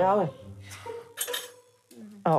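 Glass cupping cups clinking as they are handled on a person's back: a few light glass chinks about a second in, with a faint ringing tone after them.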